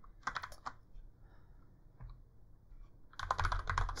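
Typing on a computer keyboard: a few clicks about half a second in, then a quick run of keystrokes in the last second as a line of code is entered.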